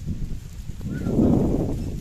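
A calf giving one short, low call about a second in, over a low rumble.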